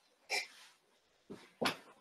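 A few short, quiet breathy bursts of soft laughter, heard over a video call.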